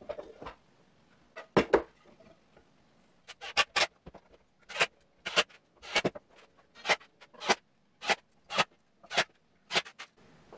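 Short, sharp knocks and clicks of wood being handled as a small pine box is fitted and fastened into a wooden test jig: a few scattered ones early, then a fairly even series of about two a second through the second half.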